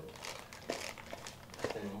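Faint crinkling of plastic packaging, bubble wrap and a plastic bag, with small scattered crackles as a bagged item is lifted out of a packed box.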